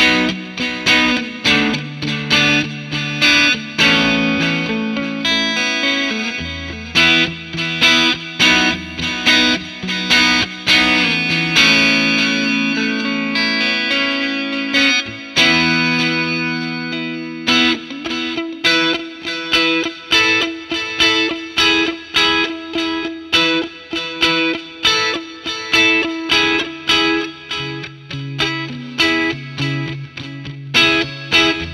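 Electric guitar (Fender Stratocaster) played through a Wampler Pantheon Deluxe dual overdrive pedal into a Fender '65 Twin Reverb amp, set to its Classic Treble Boost preset: lightly overdriven, bright guitar. Rhythmic short picked chords, about two a second, give way to a stretch of held, ringing chords in the middle before the choppy rhythm returns.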